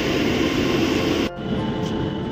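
Passenger train and platform noise at a railway station: a dense steady rumble that drops abruptly about a second and a half in to a lighter, steady hum with a faint whine.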